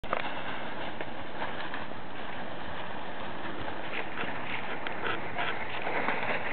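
Dry fallen leaves rustling and crunching as a small dog pushes and bounds through a deep leaf pile, the quick crackles growing denser in the last couple of seconds.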